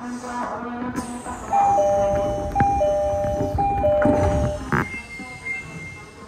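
Two-note high-low door-closing chime on an Odakyu 1000-series train at a station stop, sounding three times, followed by a sharp knock as the doors shut.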